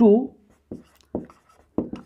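Marker pen writing on a whiteboard: four or five short, separate strokes over about a second.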